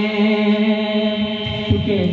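Devotional kalam music: one long, steady held note that breaks off near the end.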